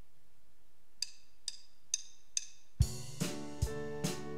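A four-click count-in, about two clicks a second, like drumsticks tapped together. Then the band comes in with a regular kick-drum beat and guitar.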